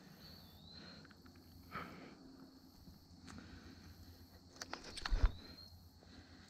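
Faint handling noise as a largemouth bass is held and a small Rapala lure is worked out of its mouth: light rustling and scattered clicks, with a quick run of sharper clicks and a dull bump near the end. A faint steady high tone runs underneath.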